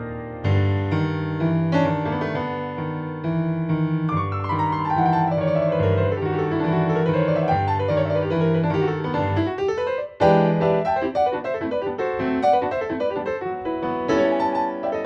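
Ravenscroft 275 virtual piano, VI Labs' sampled 9-foot concert grand, played from a keyboard. A repeating bass figure runs under a line of notes that steps downward, then climbs back up. There is a brief break about ten seconds in, then a loud chord and busier playing.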